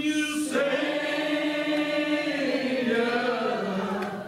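Church congregation singing a slow hymn together, holding long drawn-out notes that slide from one pitch to the next.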